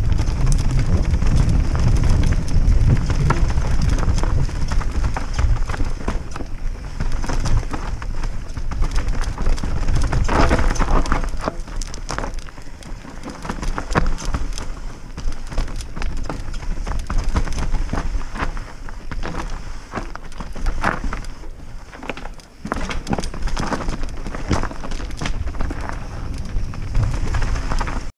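Mountain bike riding down a rough trail: a dense, irregular clatter of tyres over stones and the chain and frame rattling, with wind buffeting the microphone, heaviest in the first few seconds.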